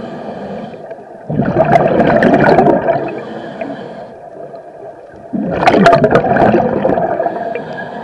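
Scuba diver breathing through a regulator underwater: a quieter hiss on each inhale, then a loud burst of exhaled bubbles, twice in a regular cycle about four seconds apart.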